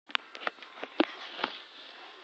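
Handling noise at the start of a recording: about six irregular soft knocks and rustles as the camera is set in place and moved close to the microphone, over a low hiss.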